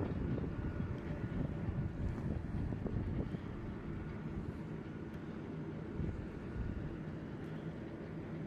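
Distant jet aircraft engines running on an airfield, a steady low rumble that eases slightly after the first few seconds, with wind noise on the microphone.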